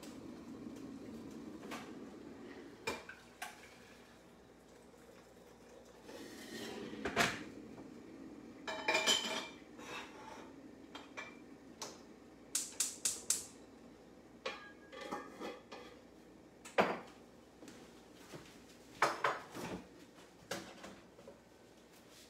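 China and cutlery clinking and knocking while tea is made: scattered single clinks, a ringing clatter about nine seconds in, and a quick run of four light taps a little after the middle.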